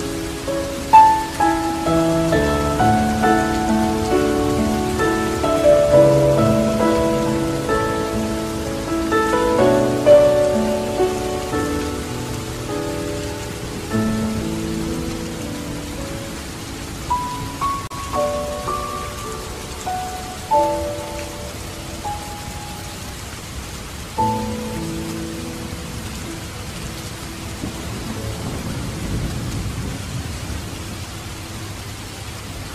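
Slow, gentle solo instrumental music with a steady rain sound layered underneath. The melody is busy at first and thins to sparser single notes about halfway through.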